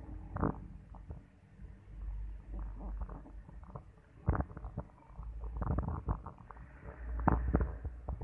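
Rumbling and irregular knocks and thumps on a handheld phone camera's microphone: handling noise as the phone is moved and panned. The low rumble swells and fades, with a few louder knocks, one about four seconds in and a cluster near the end.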